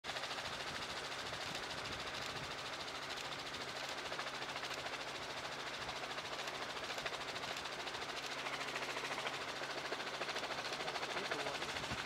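Helicopter cabin noise: a steady rotor and engine drone with a fast, even pulsing beat.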